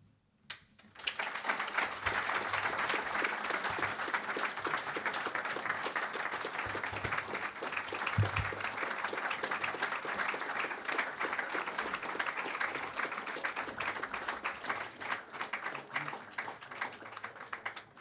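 A roomful of people applauding, a dense steady clapping that begins about a second in and dies away near the end.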